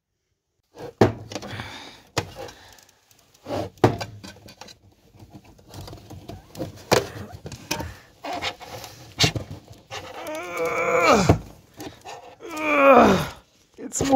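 Sharp knocks and clicks of metal parts as a glued-in section of a metal electronics enclosure is worked loose by hand. Two strained groans from the man come near the end.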